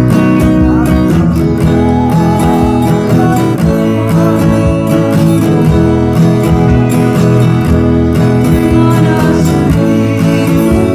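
Acoustic guitar strummed steadily in a down-down-up, up-down-up pattern, moving through open chords of E, A and B.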